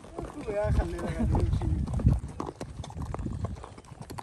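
Hooves of several horses walking on a dirt track, making an irregular run of soft clops, with a short bit of talk in the first half.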